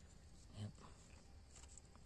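Near silence with a faint hiss, broken about half a second in by one short, low, voice-like grunt.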